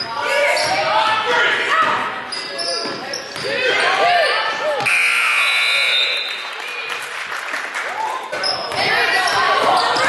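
Indoor youth basketball game in a large gym: ball dribbling on the hardwood, sneakers squeaking and players and spectators calling out, all with hall echo. About five seconds in a steady high tone sounds for about a second.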